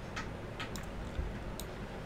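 A few faint clicks from a computer mouse as a document is scrolled, over a low room hum.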